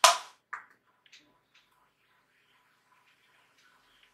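A sharp clack of a hard plastic object, such as a makeup compact or brush being set down or snapped shut, followed half a second later by a softer click and then a couple of faint taps as makeup tools are handled.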